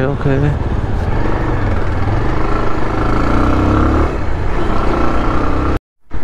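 Motorcycle being ridden through city traffic: steady wind rumble on the helmet-mounted microphone over the engine, whose faint tone wavers up and down in the middle. The sound cuts out abruptly just before the end.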